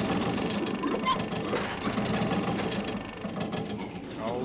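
An old refrigerator running, its motor giving off a fast, even mechanical rattle and hum, with a brief high whine about a second in.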